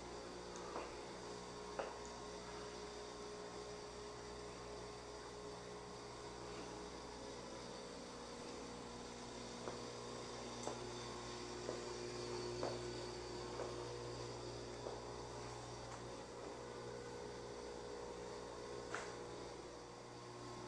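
Low, steady electrical hum of a quiet room, with a few faint ticks scattered through it.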